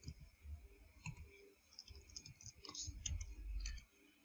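Faint computer keyboard typing: scattered quick key clicks as a line of code is entered, with a low rumble near the end.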